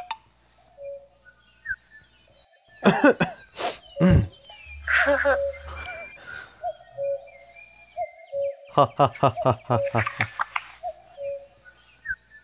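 Voices making short nonsense 'hm hm' sounds and chuckles, with a quick run of laugh-like pulses near the end, over light background music.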